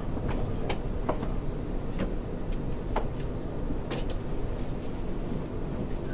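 Passenger train running, heard from inside the carriage: a steady low rumble with irregular sharp clicks and rattles.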